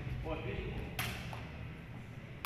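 A plastic sepak takraw ball struck once by a player's body about a second in, a single sharp smack that echoes in a large hall.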